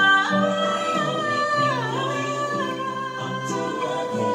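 A woman singing with her own acoustic guitar accompaniment, holding one long note that dips in pitch about halfway through, over strummed chords.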